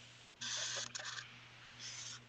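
A pen scratching across a paper journal page as it writes, in two short spells: one about half a second in and a briefer one near the end. A faint steady low hum runs underneath.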